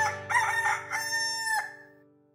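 A rooster crowing once, ending in a long held note, over the last notes of banjo music that ring on and fade out near the end.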